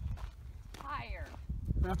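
Footsteps crunching along a dirt hiking trail, with a low rumble underneath. A short, falling vocal sound comes about a second in.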